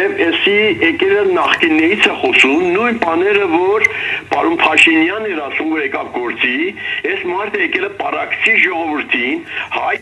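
Speech only: one person talking without a break, the voice sounding thin with its upper range cut off.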